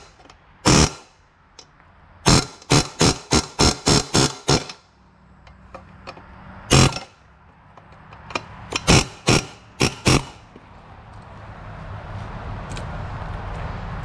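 Hammer blows on steel, driving the cut bolts out of a BMW exhaust manifold flange: sharp, ringing metallic strikes, a quick run of about eight at around three a second, then a few single and paired blows.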